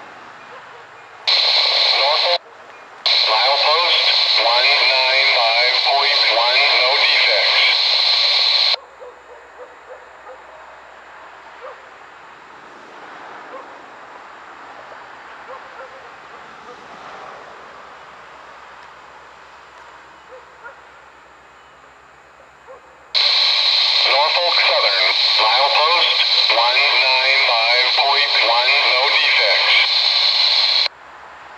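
Railroad radio voice traffic heard through a scanner speaker, thin and band-limited: a short squelch burst about a second in, then a transmission of about six seconds. After a long quiet stretch a second transmission of about eight seconds comes in near the end.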